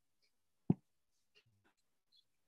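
A single sharp knock about two-thirds of a second in, followed by a few faint clicks, with near silence between them.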